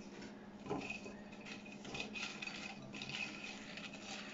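Faint kitchen handling: a fried banana fritter being handled and rolled in caster sugar in a ceramic bowl, with a few light knocks and scrapes of crockery, the clearest a little under a second in. A steady low hum runs underneath.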